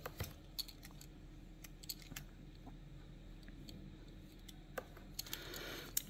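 Faint, scattered light clicks and taps of a small die-cast toy truck's plastic and metal parts being handled, with a soft rustle near the end as the blower unit comes off its trailer.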